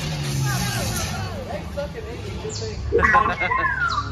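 Sci-fi dark-ride soundscape: a steady low rumble under warbling electronic chirps, then a sharp crack about three seconds in followed by a falling whistle.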